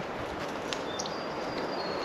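Outdoor ambience: a steady background hiss with faint, high bird chirps and thin whistled notes.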